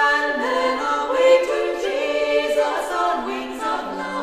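A female vocal quartet singing a cappella in several parts, with long held notes that move from one chord to the next; a new phrase begins at the start and another about three seconds in.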